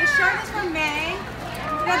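Young children's high-pitched voices chattering and calling out.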